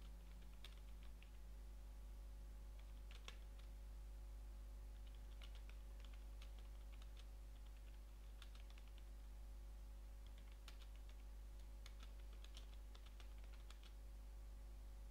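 Computer keyboard typing in short, irregular bursts of keystrokes, faint, over a steady low hum.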